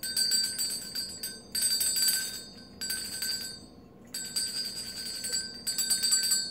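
A small metal hand bell being shaken, its clapper striking rapidly so that it rings in four bursts of about a second each, with short breaks between.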